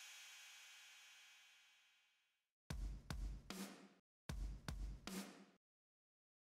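A drum-kit sting in the soundtrack. A cymbal crash rings and fades out over about two and a half seconds, then come two short drum phrases of bass-drum and cymbal hits with a brief gap between them.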